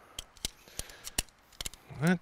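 Tent pole sections clicking as they are snapped together: a quick series of light, sharp clicks.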